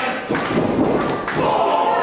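Heavy thuds on a wrestling ring as a wrestler runs across it and hits an opponent in the corner, the loudest about a third of a second in. The crowd chants and yells around it.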